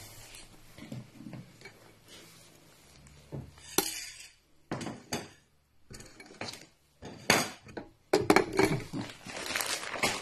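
Kitchen clatter: dishes and cutlery clinking and knocking in a string of short, separate bursts.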